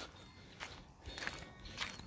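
A few soft footsteps walking across mulch and grass.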